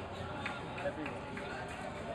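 Crowd chatter: several voices talking over one another, none standing out as a single clear speaker.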